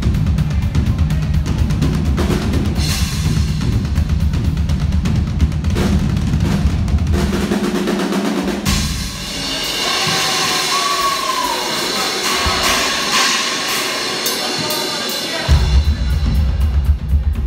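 Rock band playing live on drum kit, bass and guitar. A little past halfway the low end drops out, leaving drums and ringing cymbals with a few sliding notes over them, and the full band comes back in just before the end.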